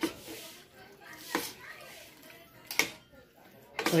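Metal spoon stirring vegetables in a metal wok, scraping and clinking against the pan three times over a soft rustle of the food.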